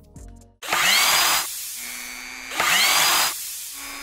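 Drill-like power-tool whirring sound effect in two bursts, each carrying a whine that bends in pitch, with a steady low hum between them.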